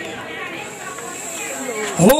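Indistinct murmuring voices of a gathered audience over a steady hiss from the sound system, in a pause between recited Quran verses.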